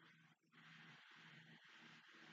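Near silence: room tone, with only a very faint low murmur.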